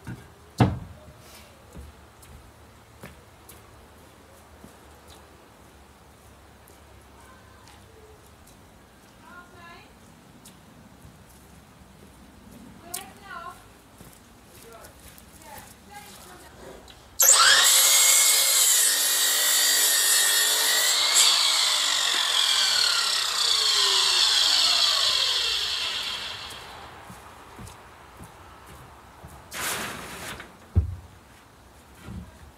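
A power saw starts suddenly and cuts through timber for about nine seconds, its whine wavering and then tailing off as the cut ends. Before it come a few scattered knocks of timber being handled.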